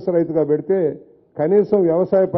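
A man speaking in Telugu into a microphone, with a brief pause about a second in.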